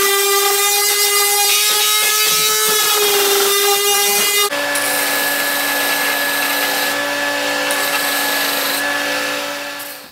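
A small handheld power tool's motor runs with a steady whine as it is worked along the edge of a wooden drawer box. About four and a half seconds in, the sound changes abruptly to a different steady machine hum at a lower pitch, which fades away near the end.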